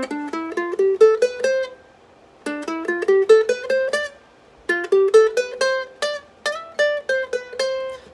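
Cordoba ukulele picked one note at a time, playing an ascending one-octave scale from about middle C up to the C above. It plays the scale three times with short pauses between, and the last run lingers on the top notes.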